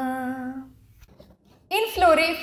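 A young woman's voice holding one long sung note at the close of a prayer song, fading out under a second in. A short pause follows, then a woman begins speaking near the end.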